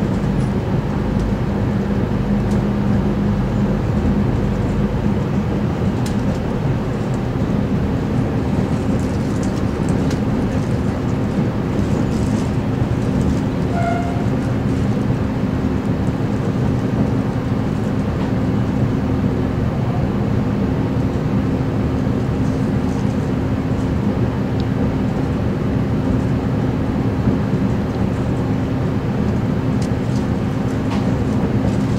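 Inside a V/Line VLocity diesel railcar under way: the steady hum of its underfloor diesel engine over wheel and rail noise. A short faint beep sounds about halfway through.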